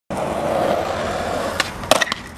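Skateboard wheels rolling on concrete, then two sharp clacks near the end as the board strikes the concrete ledge.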